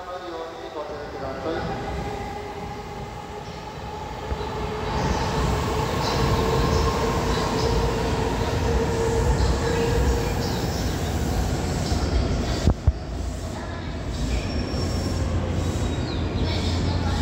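E259 series Narita Express electric train pulling into the platform and slowing to a stop, its rumble growing louder as the cars pass close by. A steady whine runs from about five to ten seconds in, and there is one sharp knock a few seconds before the end.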